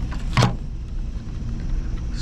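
Handling noise: one sharp knock about half a second in, over a steady low rumble.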